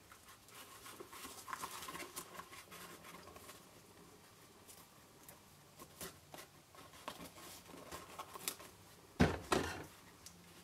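Faint rustling and light scuffing as hands tie a metallic-edge ribbon in a knot around a small cardstock box, with two louder knocks near the end.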